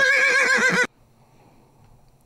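A horse whinny with a quavering pitch, cutting off sharply just under a second in.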